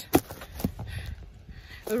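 A white chicken struggling and flapping its wings while held in the hands close to the microphone: a few dull knocks and rustles over low handling rumble, the loudest just after the start.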